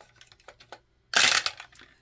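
Dice dropped into a wooden dice tower: a few light clicks, then a loud clatter about a second in as they tumble down and land in the tray.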